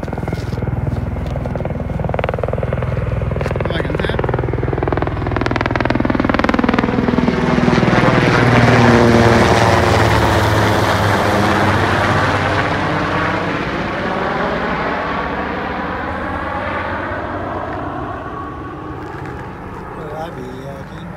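Helicopter flying low overhead: the rotor and engine noise grows louder to a peak about nine seconds in, then fades as it moves away.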